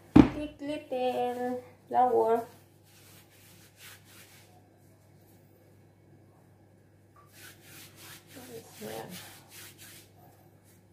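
Hands kneading soft doughnut dough on a floured countertop: dry rubbing and patting of floury hands against the dough, heaviest in the last few seconds. A single sharp thump at the very start is the loudest sound.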